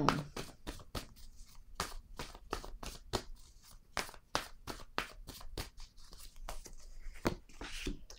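A deck of tarot cards being shuffled and handled: an irregular run of short card snaps and clicks, about three a second.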